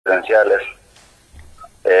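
A man's voice coming through a phone or video-call line: a brief clipped burst of speech, a pause of about a second with only faint line noise, then a hesitant "eh" as he starts to talk.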